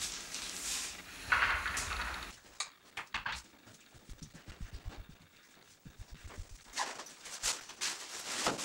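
A loud rustle of handling noise about a second in, then a string of soft, uneven footsteps on a tiled floor.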